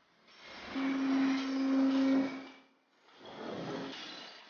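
Machinery noise in a material recovery facility: a steady rush with a hum in the middle, dipping briefly near the end before rising again.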